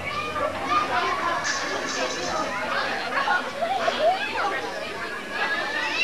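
Young children's voices chattering and calling out at once, high-pitched and overlapping.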